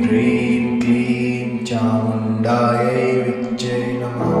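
A voice chanting a Kali mantra in Sanskrit, syllable after syllable with a short hissing consonant about every second, over a steady low musical drone.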